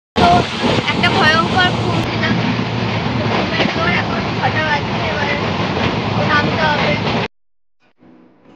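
A woman talking over the steady running noise of a moving passenger train, heard from inside the coach. It cuts off suddenly near the end.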